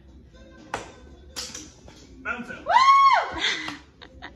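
A dart striking the bristle dartboard with one sharp knock, then, a second and a half later, a long high-pitched whoop that rises and then falls.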